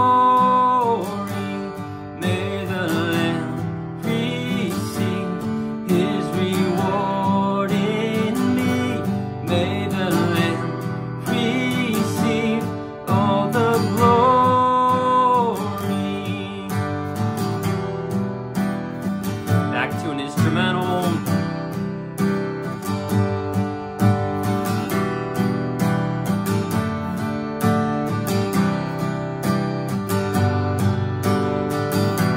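Small-bodied mahogany acoustic guitar strummed steadily through the Em–D–C–G bridge progression, with a man singing the melody over it. The singing is strongest in the first half and then mostly drops out, leaving the strumming with one more short sung phrase about two-thirds of the way in.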